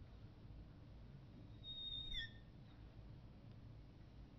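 A marker squeaking on a glass lightboard while a box is drawn: one short high squeal about halfway through that slides down in pitch, over otherwise near-silent room tone.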